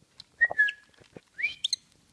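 Small pet parrot whistling twice: a short level whistle about half a second in, then a quick rising whistle near the end, with light clicks and rustles from the bedcovers.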